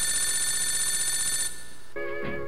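Telephone ringing: one ring with a fast, even trill, lasting about a second and a half before it stops.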